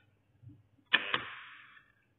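Modular latching relay clacking as a bell-push press pulses it: two sharp clicks about a fifth of a second apart, about a second in, followed by a short noise that fades out within about a second. The relay is changing over and switching the lamps off.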